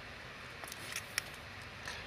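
Faint handling noise of hands tying a knot in waxed linen cord strung with beads: a few soft ticks, then one sharp little click about a second in.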